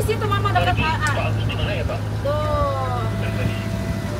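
Indistinct voices talking over a steady low hum, like an idling vehicle engine. One voice draws out a long, held sound in the second half.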